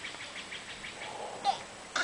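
A small animal's rapid chirping call, short high chirps about eight a second, fading out about a second in. Near the end come two brief sharp squeaks, the second the loudest.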